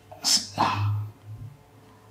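A man sneezing once: a sudden sharp burst of breath with a short voiced tail.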